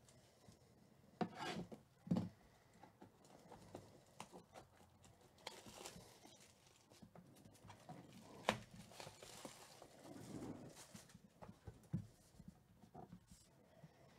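Faint handling sounds of a shrink-wrapped cardboard trading-card box: a few soft knocks and a sharp click as the box is moved and turned, with light rustling of the plastic shrink wrap as it is picked open.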